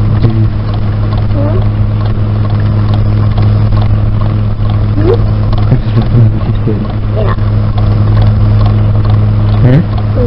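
Steady low hum and hiss of an old home tape recording, with faint voices talking underneath.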